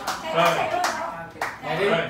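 A seated group clapping hands, the claps scattered and irregular, with voices talking over them.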